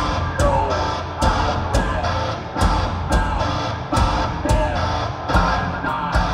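Live progressive metal band playing: heavy bass and guitars under sharp drum-kit hits about twice a second.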